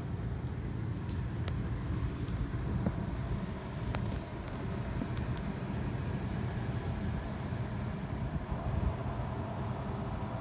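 Steady low background rumble with a few faint clicks in the first half; no guitar is being played.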